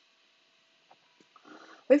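Near silence in a pause between sentences, with two faint ticks, then a soft breath drawn in about a second and a half in before a woman's voice starts again at the very end.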